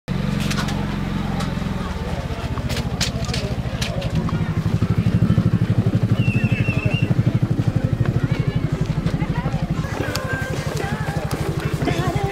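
An engine running steadily at low speed, with an even low pulsing throughout.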